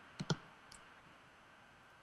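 A few small sharp clicks over faint hiss, heard through a Skype call: two in quick succession a quarter second in, a fainter one soon after, and two more at the very end. They are computer mouse clicks.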